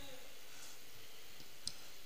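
A pause in the preaching: quiet room tone with a single short click about three-quarters of the way through.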